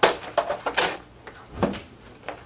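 Clunks, rattles and scrapes of an upright vacuum cleaner being handled, with a sharp knock at the start, a few quick scrapes after it, and another knock near the end.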